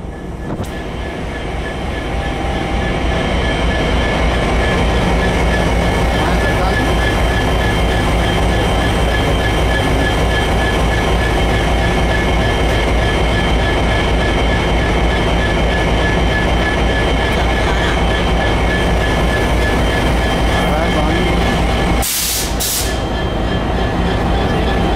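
An Amtrak diesel passenger train running alongside a station platform: a loud, steady rail rumble that builds over the first few seconds, with a steady high-pitched ring above it. Near the end there is a brief loud rush of noise.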